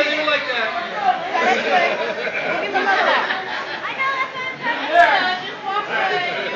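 Crowd chatter: many people talking at once in a large room, with a sharp click about five seconds in.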